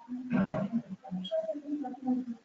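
A low, indistinct human voice in short broken fragments with no clear words, and one brief sharp click about half a second in.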